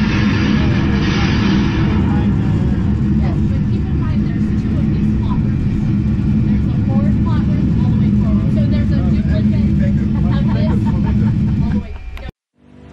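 A steady, loud low rumble with faint voices murmuring over it.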